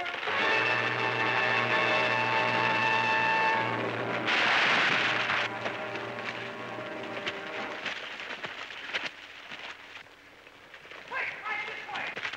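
A long held, steady note, then a crashing rush of noise about four seconds in as a felled tree comes down, fading away over the next few seconds.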